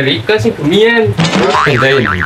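A young man speaking in the Banyumasan (Ngapak) Javanese dialect. Over the last second a wavering, warbling pitched sound comes in, louder and brighter than the talk.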